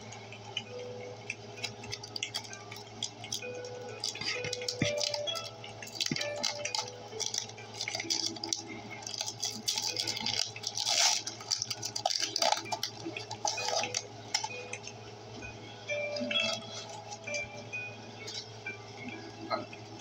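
Foil wrapper of a Pokémon card booster pack crinkling and being torn open by hand, a run of dry crackles that is thickest about halfway through.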